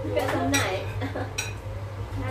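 Cutlery and plates clinking at a table during a meal, with two sharp clinks, one about half a second in and another just under a second later.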